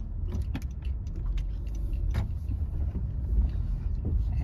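Manual-transmission car heard from inside the cabin while driving: a steady low rumble of engine and road noise with a few faint clicks.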